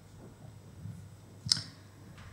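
A pause in speech with faint room tone, then a single sharp click about one and a half seconds in.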